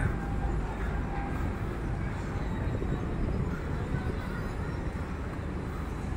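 Steady low engine rumble and general noise of a busy port quay, with no single sound standing out.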